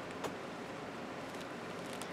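Faint, steady rubbing of a burnishing tool over paper glued onto card, with a light tick about a quarter second in.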